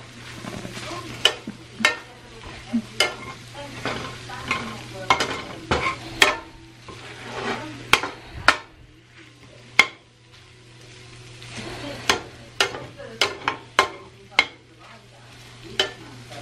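A utensil scraping and knocking against a metal skillet as scrambled eggs, chicken and sausage are stirred, over a sizzle of frying. The knocks are sharp and irregular, a little over one a second, and come thicker near the end.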